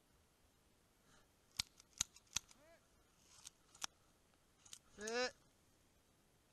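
Sharp single cracks of airsoft pistol shots, about six at uneven intervals, followed near the end by a short shout.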